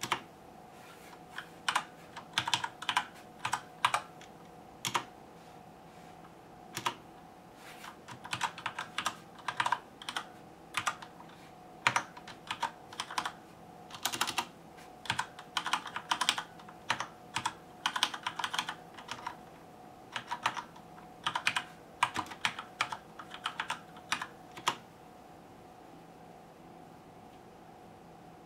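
Typing on a computer keyboard: irregular runs of keystrokes with short pauses, ending near the end, over a faint steady hum.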